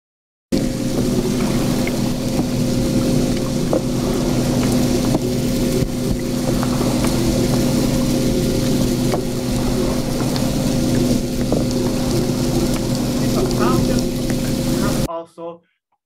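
Played-back recording of wind turbine noise, a continuous machine hum with several steady tones over a noisy rumble, presented as a continuous type of human-made noise exposure. It starts abruptly about half a second in and is cut off shortly before the end.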